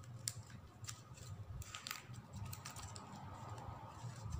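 Faint, scattered crisp clicks and crinkles of stiff plastic gift ribbon being threaded through the weave and tucked between the fingers.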